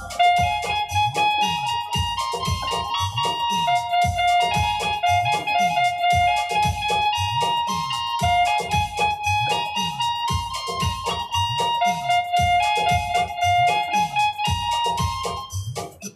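Electronic keyboard playing a melody over a built-in drum rhythm, a deep falling-pitch drum beat about three times a second; the music cuts off at the very end.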